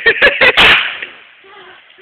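Fireworks exploding: about four sharp, very loud bangs in quick succession within the first second, then a quieter stretch.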